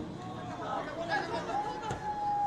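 Faint chatter and calls of voices across an outdoor soccer field, with one long held tone starting near the end.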